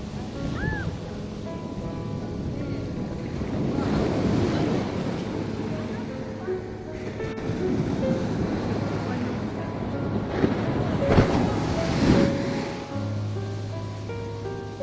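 Ocean surf breaking and washing up the sand at the water's edge, swelling about four seconds in and again near the end, with background music laid over it.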